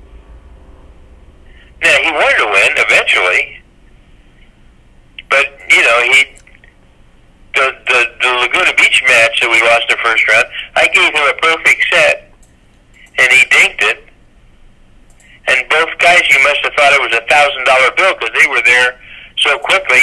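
A man talking in several stretches with short pauses between them, his voice thin and narrow like speech over a telephone line.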